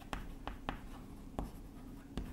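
Chalk writing on a blackboard: a few faint, sharp, irregular taps and strokes of the chalk against the board.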